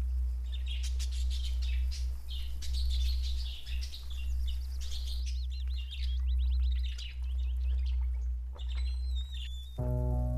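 Birds chirping and calling, with many short chirps and a run of quick repeated trills about halfway through, over a steady low rumble. Soft music comes in right at the end.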